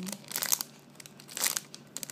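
Clear plastic bag around a squishy toy crinkling as it is handled, in two short bursts.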